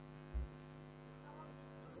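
Steady electrical hum on the call audio, a stack of even tones that never changes, with a soft low thump about half a second in.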